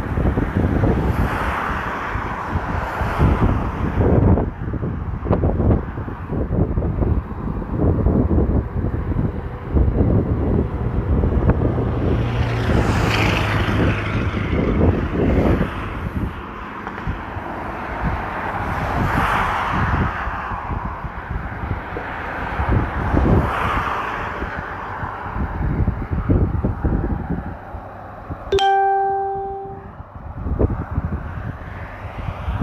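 Rough outdoor rumble and buffeting on a phone microphone, rising and falling in several swells of noise. About a second and a half before the end comes a single ringing electronic-sounding chime that fades out.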